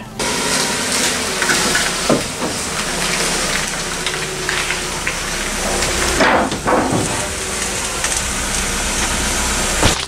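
A car's engine running at low speed under a steady hiss, with a brief louder swell about six seconds in.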